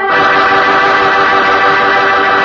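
Organ music holding sustained chords, moving to a new chord right at the start.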